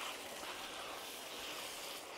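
Minced beef and sauce sizzling steadily in a hot pan, a soft even hiss.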